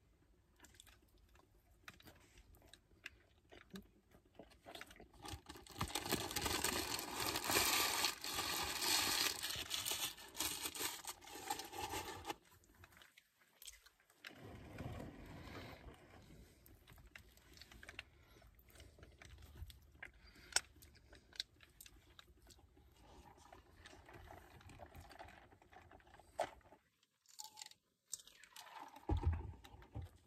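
A person eating, chewing and crunching food close to the microphone inside a car, loudest for several seconds in the first half.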